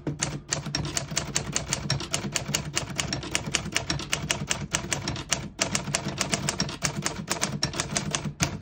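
1947 Smith-Corona Clipper manual portable typewriter being typed on: a rapid, even run of key strikes, with a short pause about five and a half seconds in. The keys strike cleanly, none skipping or sticking.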